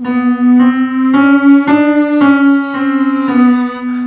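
Electric keyboard playing a chromatic scale one semitone at a time, about two notes a second, stepping up a few semitones and back down, while a voice hums each note with closed lips on "mmm" as a pitch-matching vocal exercise.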